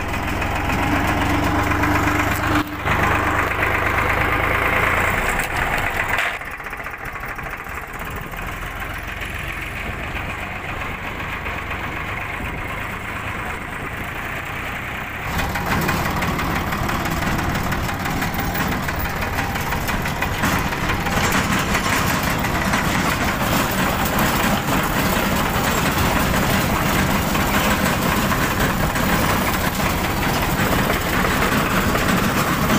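Tractor diesel engine running as the tractor is driven, heard from the driver's seat. The sound drops to a quieter, duller stretch between about 6 and 15 seconds in, then returns to full level.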